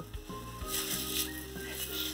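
Thin plastic produce bag crinkling briefly about a second in as vegetables are handled into it, over soft background music with held low notes.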